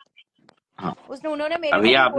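Near silence for under a second, then a person's voice making drawn-out, wordless sounds from about a second in.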